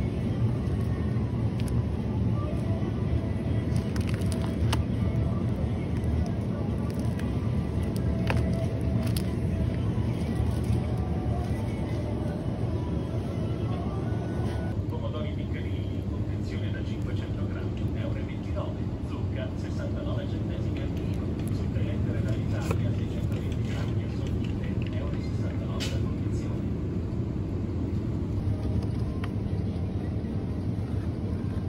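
Supermarket ambience: a steady low hum of the refrigerated display cases and store, with indistinct shoppers' voices and a few light clicks of packaging being handled.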